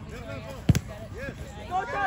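A soccer ball kicked once, a sharp thud about two-thirds of a second in, amid players' and spectators' voices, one calling "yes".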